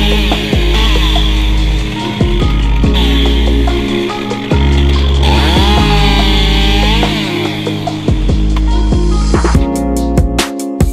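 Background music over a top-handle chainsaw cutting through a beech limb. The saw's pitch dips and comes back up about halfway through as it works in the cut.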